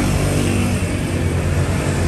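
A motor vehicle engine running loud and steady at an even pitch.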